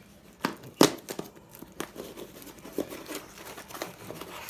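Hands handling and picking at the tape on a small cardboard shipping package: irregular crinkling, tearing and sharp clicks, the loudest a little under a second in.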